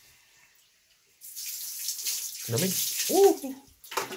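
Water splashing and sloshing from a plastic bag being dipped into a spring pool and poured out. It starts about a second in.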